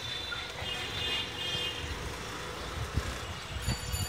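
Street traffic noise heard from a slowly moving rickshaw, with a thin high tone lasting about a second near the start and a few low knocks toward the end.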